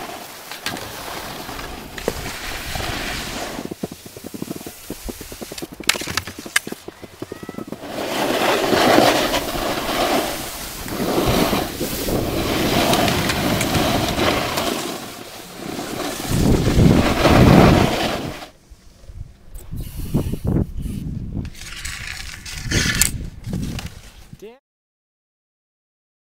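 Skis scraping and hissing over packed snow, with wind buffeting the microphone in uneven surges and a few sharp clicks; it drops away about three-quarters of the way through.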